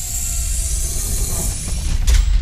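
Transition sound effect for an animated countdown title card: a steady hissing rush over a deep rumble, growing louder near the end.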